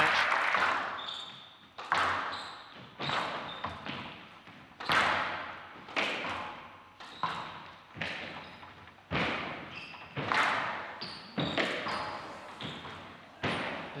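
Squash rally: a hard rubber ball cracking off rackets and the court walls about once a second, each hit echoing in the large hall. Applause dies away in the first second.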